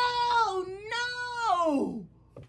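Domestic cat giving one long drawn-out meow that holds its pitch and then slides down at the end.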